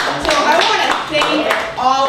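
Voices talking, crossed by scattered hand clapping from a small audience.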